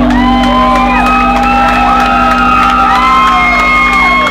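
Club audience cheering and whooping as a live rock song ends, several drawn-out 'woo' calls overlapping, over a steady low tone left ringing from the band's amplifiers.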